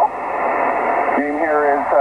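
Hiss from a Yaesu FT-857D HF transceiver receiving single-sideband on the 17-metre band, with the narrow, band-limited sound of the radio's speaker. About a second in, a distant station's voice comes through over the noise.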